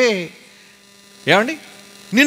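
Steady, faint electrical hum from a public-address system, heard in a pause of a man's amplified speech; a phrase dies away at the start and one short syllable breaks in a little past the middle.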